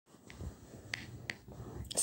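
A few faint, sharp clicks over low room noise.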